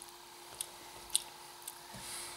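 A few faint, sharp mouth clicks and lip smacks from a person close to the microphone, over a low steady hum.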